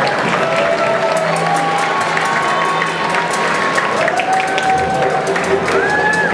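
Audience applause, a steady patter of many hands clapping, with crowd voices and calls over it and a few short held tones.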